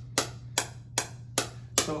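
Shockwave therapy handpiece pressed on a knee, firing sharp clicks at an even pace of about two and a half a second, over a low steady hum. Each click is one shockwave pulse of the treatment.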